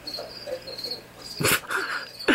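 A cricket chirping: short, high chirps repeated evenly, about two or three a second. A brief loud burst cuts in about three-quarters of the way through.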